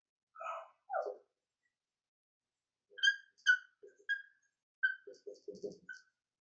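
Dry-erase marker squeaking on a whiteboard as letters are written. Two short, duller strokes come in the first second. From about three seconds in there is a run of short, high-pitched squeaks with brief scratchy strokes between them.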